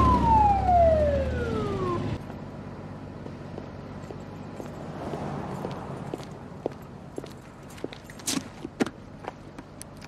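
Police motorcycle siren winding down in one falling wail over about two seconds, over a low engine rumble that drops away as it ends. Then quieter street noise, with a few short clicks and steps near the end.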